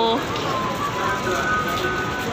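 Ice cream van playing its chime tune: a held chord cuts off just after the start, then thinner, higher steady notes carry on, over street chatter.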